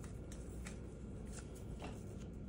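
A small folded paper slip being unfolded by hand, rustling faintly with a few soft crackles.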